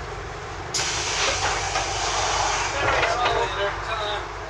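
Scania Enviro 400 double-decker bus running, heard from inside the lower deck as a steady low rumble. About a second in, a sudden loud hiss starts and lasts until near the end, with voices under it.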